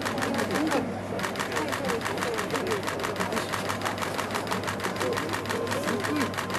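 Rapid, steady clicking of camera shutters firing in continuous bursts, about ten clicks a second, with quiet onlookers' voices underneath.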